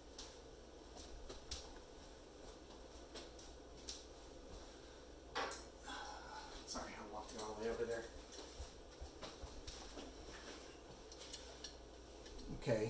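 Faint scattered clicks and clinks of small hard objects being rummaged through, away from the microphone, during a search for a razor blade.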